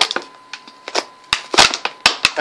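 A toy's cardboard-and-plastic blister package being ripped open by hand: a series of sharp cracks and tearing, loudest about a second and a half in.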